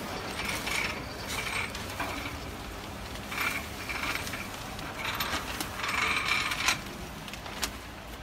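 Plastic packaging film crinkling and rustling as it is handled and fed over the rollers of a vertical form-fill-seal packing machine, in several irregular bursts, the longest about five seconds in.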